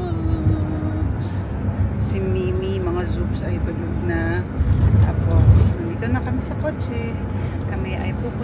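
A car's cabin road noise: a steady low rumble from inside a moving car, swelling briefly about five seconds in, with a woman's voice speaking over it.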